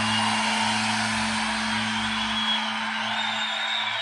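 Nylon-string acoustic guitar: a held chord ringing on and slowly fading, with no new strums.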